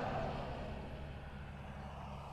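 Honda CBR1000RR's inline-four engine idling at a standstill, a low steady hum.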